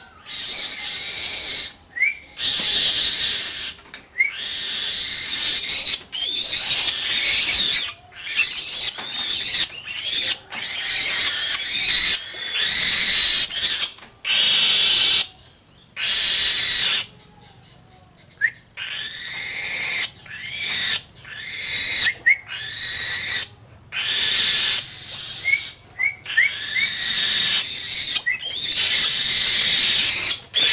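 A pet bird of prey giving harsh screeching calls over and over, each lasting a second or two with short breaks, with a few short rising chirps between them and a brief lull about halfway through.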